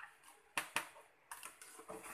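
Light taps and clicks of a long-handled wire mesh strainer knocking against a metal pot and a plastic colander as boiled water spinach is tipped from it; about five short taps over two seconds.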